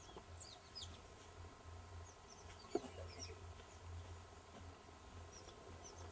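Faint birdsong: small birds give short, high chirps that fall in pitch, in scattered clusters, over a low hum. A single sharp click comes a little before halfway.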